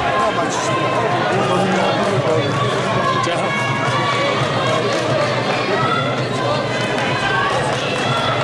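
Several voices shouting and talking over one another at ringside during a kickboxing bout, a steady mix of calls with no single voice standing out.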